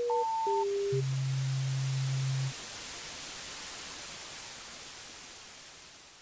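Synthesized intro sting: a few short electronic beeps at shifting pitches, then a low steady tone held for about a second and a half, over a bed of static hiss that fades out near the end.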